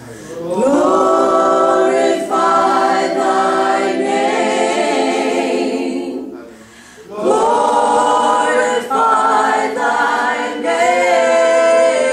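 Three women singing in close harmony a cappella, in two long sustained phrases with a short breath between them about six and a half seconds in.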